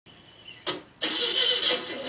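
Car engine cranked by its starter without catching, a harsh grinding noise that begins about a second in after a short burst; the failed start suggests a dead battery.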